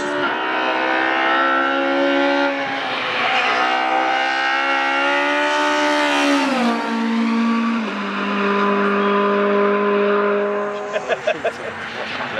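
Renault Clio hillclimb race car at full throttle, the engine note climbing through the revs with a short dip at a gear change about two and a half seconds in. It climbs again, drops sharply as the car passes about six seconds in, then holds a lower, steadier note as it pulls away up the hill.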